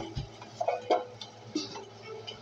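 A few light clicks and taps of a metal card tin being handled and set down, the sharpest click right at the start.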